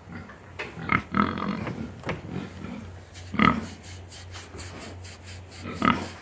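Pigs grunting: three short grunts, about a second in, about three and a half seconds in and near the end, over a steady low hum.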